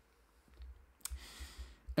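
A single sharp click about halfway through, then a short, soft hiss of an inhaled breath just before speaking resumes.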